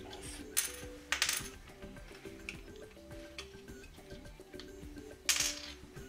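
Plastic lids being prised off sealed lead-acid batteries with a small screwdriver: a few sharp plastic clicks and clatters, the loudest near the end, over quiet background music.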